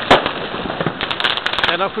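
Fireworks and firecrackers going off: one sharp bang just after the start, then a rapid string of cracks about a second in.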